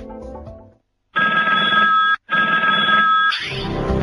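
Music fades out, and after a brief silence a ringing tone sounds twice, each burst about a second long, like a telephone ringing. Music comes back in near the end with a rising sweep.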